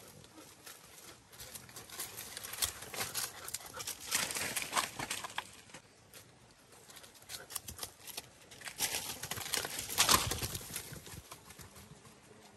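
Footsteps and brushing through dry leaves and scrub on a dirt trail. The crunching and rustling come in uneven bursts, loudest about four seconds in and again around ten seconds in.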